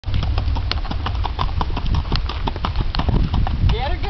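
Hoofbeats of a ridden pinto horse moving at a brisk gait on a dirt track, quick, even strikes at about five a second over a steady low rumble.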